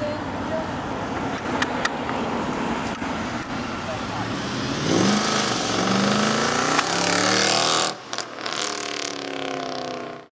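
Modded Mercedes-Benz C63 AMG's 6.2-litre V8 with aftermarket exhaust accelerating hard, its note rising from about five seconds in and loudest until about eight seconds, then a second rising pull as it drives away. Before the acceleration the engine rumbles low under background voices.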